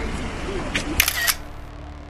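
A quick burst of several camera shutter clicks about a second in, over people's voices, then a low steady hum once the clicks stop.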